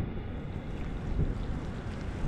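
Wind buffeting the microphone outdoors, a low, uneven rumble that swells briefly about halfway through.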